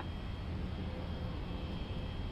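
Steady low hum and faint hiss of the air traffic control radio recording between transmissions, with faint steady tones in the background.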